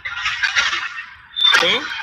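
Several voices answering at once over a video call, overlapping and garbled by the call's audio, followed by a single voice about a second and a half in.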